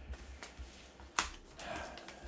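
Hands handling a USPS mailing envelope: a few short sharp clicks and taps, with faint rustling of the envelope near the end.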